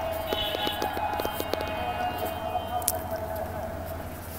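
A single long note held steady in pitch, with faint overtones, sounding throughout. Several short clicks come in the first second or so.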